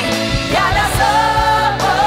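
A worship team of several women singing a praise song together into microphones over a live band with drums, holding long sung notes.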